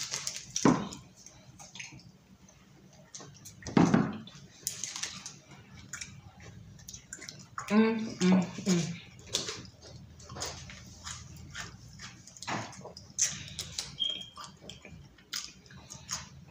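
Two people chewing mouthfuls of sticky Twix caramel-and-chocolate bars fast, with many small wet mouth clicks and smacks. About halfway through, one of them hums a closed-mouth "mm" while chewing.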